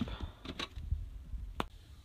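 Cardboard shoe box and sneaker being handled while packing: scattered light knocks and scrapes of cardboard, with one sharp click about one and a half seconds in.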